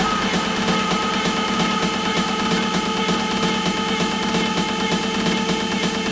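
Techno music from a DJ mix. Right at the start the deep bass drops out and a dense, buzzing, noisy texture with a few steady held tones carries on.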